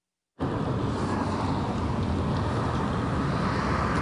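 Steady outdoor street ambience with traffic noise, an even rushing haze that cuts in after a brief moment of dead silence at the start.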